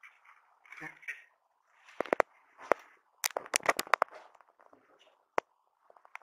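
Sharp clicks and rustles from a small handheld electronic device being handled and its buttons pressed right at the microphone, in quick clusters through the middle with a last single click near the end.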